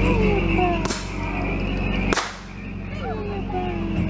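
Two sharp shots from a blank-firing revolver, a little over a second apart, the second the louder, over the low steady hum of a tour boat's motor.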